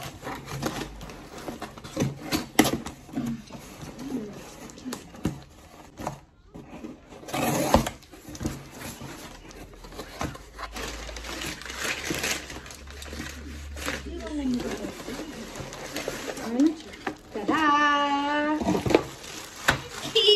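Cardboard shipping box being opened by hand: packing tape ripped and peeled with a sharp tear about seven seconds in, flaps pulled open with crackling and scraping cardboard, then plastic packaging rustling near the end.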